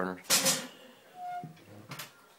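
Kitchen range oven door being closed on a loaf: a short burst of noise a moment in, then a sharp click near the end as the door shuts.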